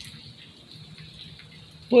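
Steady hiss of rain and sleet falling outside an open shelter. A man starts to speak right at the end.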